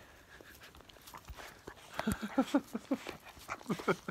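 Tibetan mastiff puppies vocalising as they play and mouth at a person, with a quick run of short sounds, each falling slightly in pitch, starting about halfway through.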